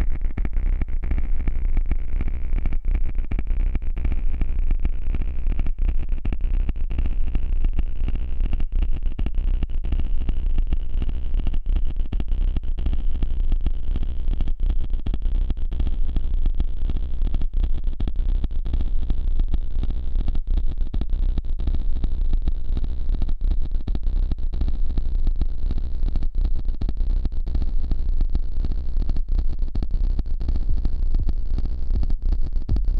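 Ambient electronica: a continuous synthesized texture over a heavy, deep low hum, with a bright filtered tone slowly rising in pitch throughout and frequent brief stutters or dropouts.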